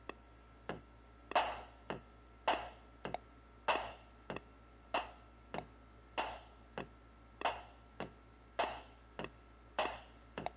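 Artiphon Orba's metronome clicking at a steady pace of about 100 beats a minute, every other click louder with a short ringing tail, while a drum loop is being recorded.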